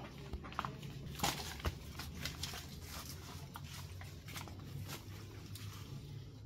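Faint handling noise: scattered light clicks and taps with some rustling over a low steady hum, as a plastic glue bottle is handled among potted plants.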